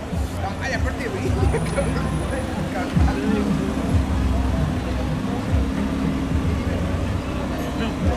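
People talking over the low, steady rumble of idling car engines and street traffic.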